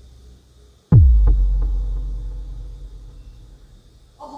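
A deep bass boom sound effect about a second in: a sudden hit whose pitch drops quickly into a low rumble, fading away over about three seconds.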